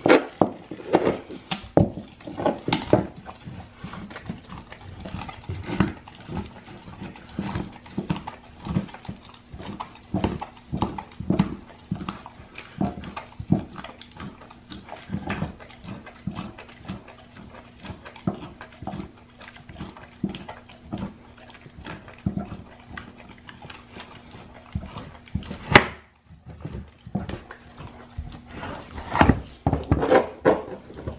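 Great Dane chewing and gnawing a raw deer shank bone: irregular crunching and clicking of teeth on bone and meat, with one sharp click near the end.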